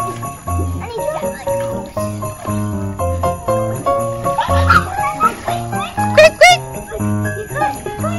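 Upbeat background music with jingle bells and a steady, repeating bass line. A high voice calls out a few times over it, about four and six seconds in.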